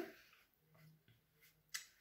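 Near silence: room tone, broken by one short faint click shortly before the end.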